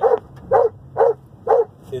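Doberman Pinscher barking from the back seat inside a moving car: four loud barks about half a second apart.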